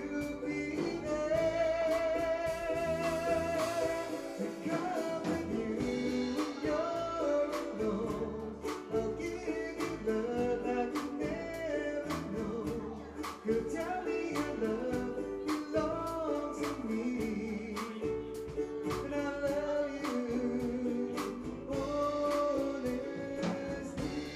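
Live band playing a Hawaiian-style song on ukulele, bass and drums, with a singer holding long, wavering notes over a steady beat.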